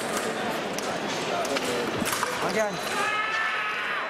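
Busy fencing-hall hubbub: a steady wash of voices from around the venue. A shout rises and falls about two and a half seconds in, followed by a held, drawn-out call. A few sharp clicks come through the crowd noise.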